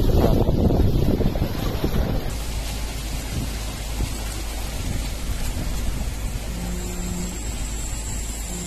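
Wind buffeting a phone microphone in gusts for about two seconds, then a sudden change to a steadier, quieter outdoor hiss with a low hum underneath and a short low tone near the end.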